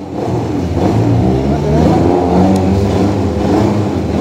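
Car engine revving, its pitch rising and falling.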